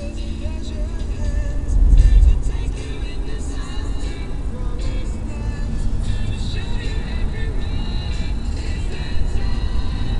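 Music from a car radio playing over the steady low rumble of a moving car's road and engine noise, heard from inside the cabin; the rumble swells briefly about two seconds in.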